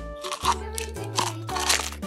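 Background children's music with a steady bass line, over the crinkling of a plastic sweet wrapper being handled, with two loud crinkles, about half a second in and near the end.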